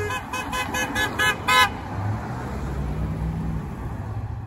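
A vehicle horn honking in a rapid string of short beeps, about five a second, the last one the loudest about a second and a half in, a celebratory honking for the passing parade. After that, the low steady sound of passing cars.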